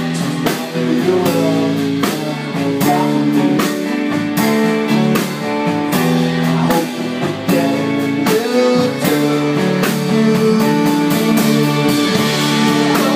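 Live music: a song played on grand piano with a steady beat.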